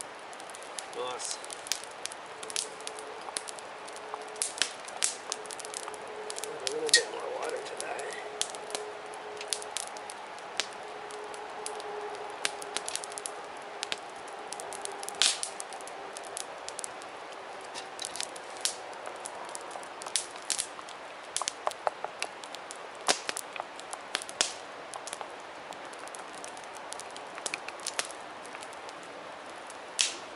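Wood campfire crackling, with sharp pops from the burning sticks scattered irregularly throughout, a few much louder than the rest.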